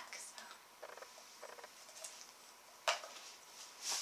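Faint scratching and fiddling of a small jewellery gift box being worked open, with one sharp click about three seconds in.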